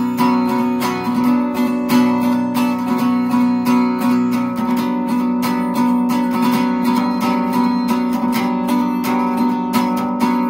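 Guitar strummed in quick, even strokes, moving through a short progression of chords.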